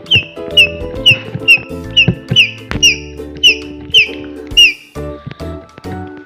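Rose-ringed parakeet giving a run of about ten shrill, downward-sliding calls, roughly two a second, that stop a little before the end, over steady background music.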